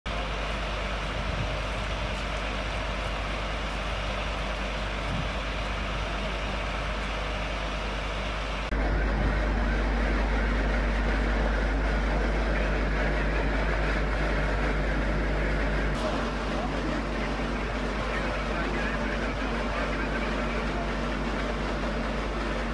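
A parked MAN fire engine's diesel engine running steadily, with outdoor street noise. The overall sound steps up abruptly about nine seconds in and drops back at about sixteen seconds.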